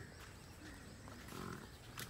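Faint animal sounds, with a slightly louder low call about one and a half seconds in.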